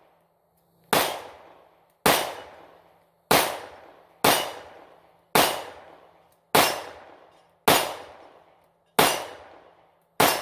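Springfield Hellcat 9mm pistol fired eight times at a steady pace, about one shot a second, with each report trailing off in an echo before the next.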